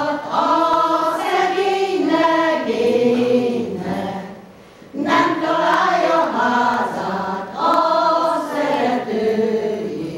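Women's folk choir singing unaccompanied, phrase after phrase, with a short break in the singing about four seconds in before the next phrase begins.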